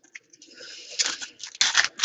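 Trading cards being handled and shuffled: an irregular run of scraping and rustling with a few sharp clicks near the end.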